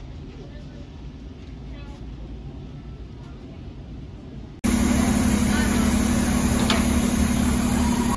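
Quiet shop ambience with faint voices, then about four and a half seconds in an abrupt cut to the loud, steady hum and rumble of a bus engine running close by, which stops suddenly at the end.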